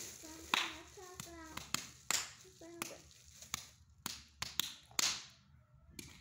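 Plastic action figures being handled: a string of sharp clicks and taps and a few short rustles, with a child's brief wordless vocal sounds in between.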